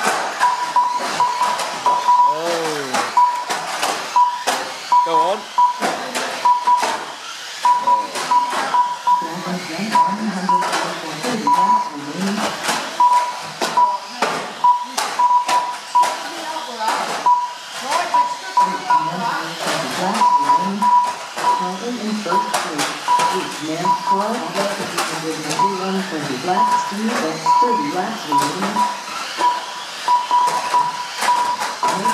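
Small plastic-bodied RC banger cars clacking as they collide with each other and the wooden track barriers, over background chatter of people's voices. A steady high tone keeps cutting in and out throughout.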